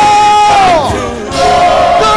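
Worship music with a crowd of voices singing and shouting. A long held note slides downward about half a second in.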